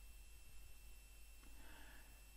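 Near silence: a faint steady hiss with a thin high-pitched hum.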